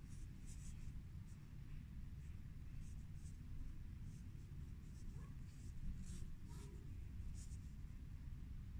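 Faint, scratchy rustles of a yarn needle and yarn being drawn through crocheted fabric, in short irregular strokes over a low steady background rumble.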